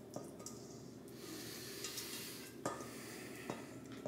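Faint scraping of a spatula against a stainless steel mixing bowl as thick carrot-cake batter is scraped out and drops into the bowl below, with a few soft taps.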